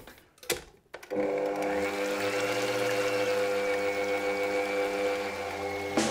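A Smeg stand mixer's electric motor switched on about a second in and running steadily, its whisk beating a mixture of egg yolks, cream and milk in a steel bowl; its whine rises slightly as it comes up to speed. A few light clicks come before it starts.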